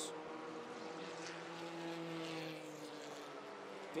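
Small open-wheel racing car's engine running at a steady speed, a humming note whose pitch sinks slowly over a few seconds.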